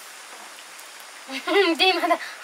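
A steady soft hiss at a wood-fired clay hearth with an aluminium pressure cooker on it. A high-pitched voice breaks in near the end.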